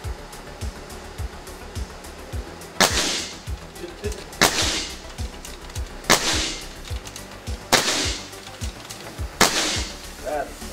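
Five shots from a .22 Air Arms S510 XS Tactical pre-charged pneumatic air rifle with a moderator on its muzzle, about a second and a half apart, each a sharp crack that trails off quickly. Background music with a steady beat runs underneath.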